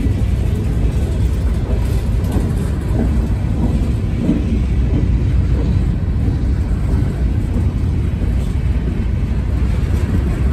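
Freight train of covered hopper cars rolling past close by: a steady, loud low rumble of steel wheels on rail.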